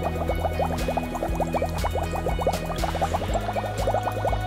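Background music with steady low notes. Over it, water is squirted from a plastic wash bottle into a glass volumetric flask, a rapid run of short rising bubbly chirps that stops right at the end.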